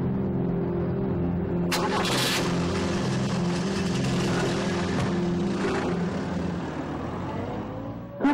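A car door shuts about two seconds in, then an older sedan's engine revs as the car pulls away and passes. A low, sustained music drone runs underneath.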